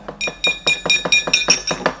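A wayang puppeteer's kepyak, metal plates hung on the side of the puppet chest, struck in a fast clattering run of about six strikes a second with a high metallic ring. A few plain knocks on the wooden chest come just before the ringing strikes begin.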